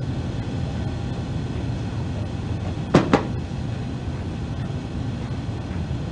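Steady low rumble and hiss of a recorded air traffic control radio channel between transmissions, with two short sharp clicks about three seconds in.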